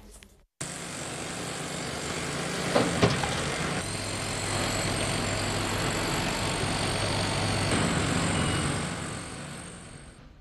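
Heavy construction machinery running steadily at a demolition site, an engine hum under a wash of site noise, with a couple of sharp knocks about three seconds in. An extra steady whine joins from about four to eight seconds in.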